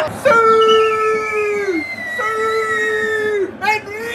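A person's voice holding two long wailing notes of about a second and a half each, each sagging in pitch as it ends.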